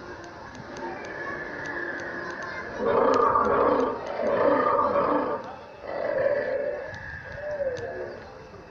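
Three loud, drawn-out recorded dinosaur roars, each about a second long, played at the dinosaur models.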